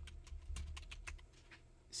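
Computer keyboard typing: a quick, faint run of about ten key clicks as a short search term is typed, thinning out after the first second.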